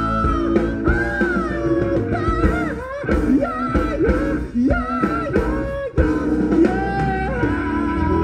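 Live rock band playing, recorded from a concert: a sustained lead line bending up and down in pitch over bass and drums.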